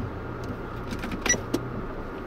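Car engine and road noise heard from inside the cabin as a steady low hum, with two short sharp clicks a little past the middle.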